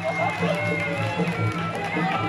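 Traditional Kun Khmer ring music: a reedy sralai shawm playing a sliding, wavering melody over a steady drum beat.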